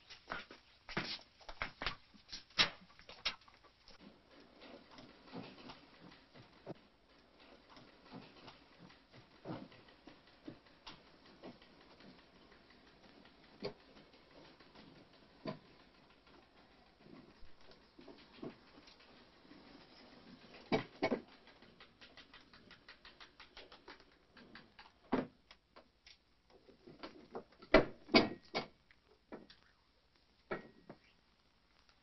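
Scattered soft taps, clicks and shuffling of movement and handling, with a few louder knocks about two-thirds of the way through and near the end.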